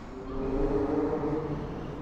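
Town-centre traffic with a heavy vehicle's engine running: a steady hum that swells about half a second in and eases off toward the end.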